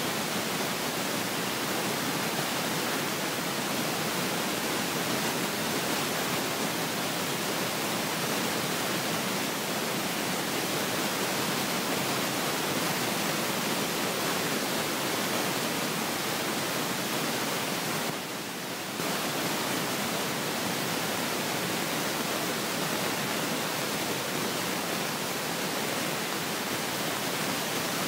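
Steady, even hiss of static-like noise with no distinct events in it. It drops out briefly for about a second about two-thirds of the way through.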